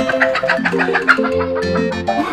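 Background film music: a quick plucked-string melody, guitar-like, over held lower notes.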